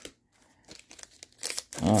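Foil wrapper of a Topps baseball card pack crinkling as it is handled, first with faint scattered rustles, then a brief louder rustle near the end.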